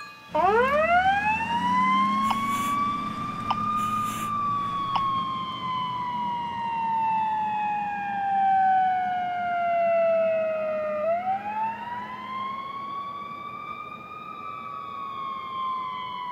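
Emergency vehicle siren in wail mode: it winds up from a low pitch to a high one over about four seconds, slides slowly down, then winds up again about eleven seconds in and starts to fall once more. A low rumble runs beneath it.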